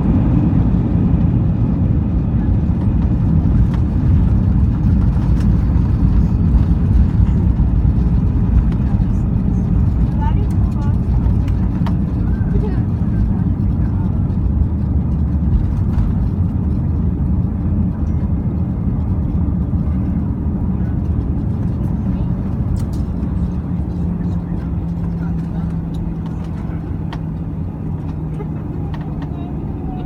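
Airliner cabin noise on the ground just after landing: a loud, steady low rumble of engines and wheels that slowly fades as the aircraft slows, with a steady low hum coming in during the second half.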